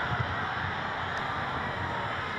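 Football stadium crowd making a steady, even noise.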